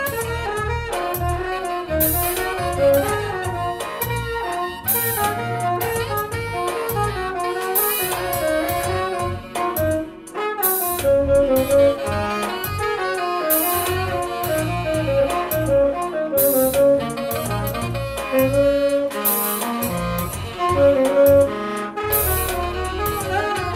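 Saxophone playing a jazzy melody over a backing track that has a bass line and regular cymbal-like hits every two to three seconds.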